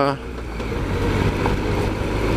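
Triumph Explorer XCa's three-cylinder engine running at a steady, low road speed while the motorcycle rides a gravel track, with a continuous low hum and a hiss of wind and tyre noise.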